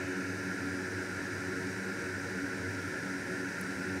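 A steady whooshing air noise with a faint low hum, as from a fan running at the workbench, unchanging throughout.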